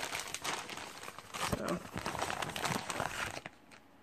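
Crinkling packaging being handled as a clear plastic bag is drawn out of a paper Amazon mailer, with a quick run of rustles that stops about three and a half seconds in.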